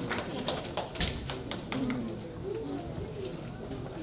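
A few scattered claps and taps, the loudest about a second in, as applause dies away, followed by low murmuring voices from the audience.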